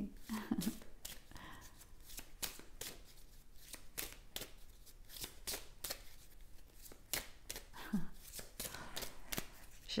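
A deck of tarot cards being shuffled in the hands: a run of soft, irregular card flicks and clicks, several a second.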